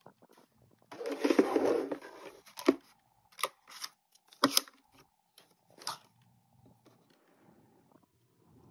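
Plastic-packaged supplies being handled and slotted into a plastic drawer basket: a burst of crinkling about a second in, then a handful of sharp plastic rustles and clicks that die away near the end.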